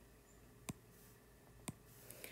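Two light taps of a stylus tip on an iPad's glass screen, about a second apart, picking a new pen colour from the palette, against near-silent room tone.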